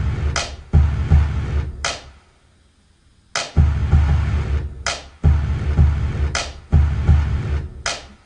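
Drum-machine hip-hop beat playing back from the Sonic Producer online beat maker: a club drum combo with a heavy low kick under sharp snare hits on two and four, a snare about every second and a half. The loop breaks off briefly about two seconds in, then starts again.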